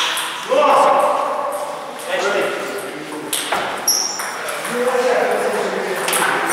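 Indistinct voices talking, with a few sharp clicks of a table tennis ball, one near the start and a couple a little past the middle.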